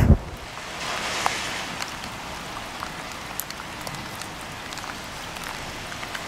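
Steady hiss of water with scattered small drips and ticks, like rain pattering on water.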